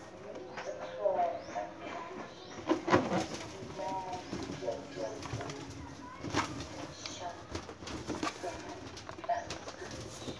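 Doves cooing in a few short phrases, with a couple of sharp knocks in between.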